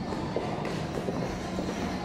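Boxing gym sound during sparring: a steady rumbling background noise with a few faint, light knocks from gloves and footwork.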